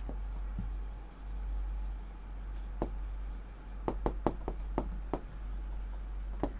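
Stylus writing on an interactive board's screen: soft strokes with a series of sharp taps, most of them in the second half, over a steady low electrical hum.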